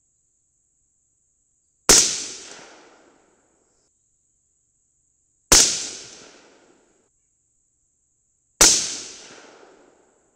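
Three rifle shots from a 22 Nosler AR-15, a few seconds apart. Each is a sharp crack that trails off over about a second.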